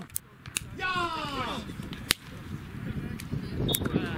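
A voice shouts once on an open football pitch, the call falling in pitch, and about a second later comes a single sharp crack, the loudest sound, like a ball being struck or a hand clap.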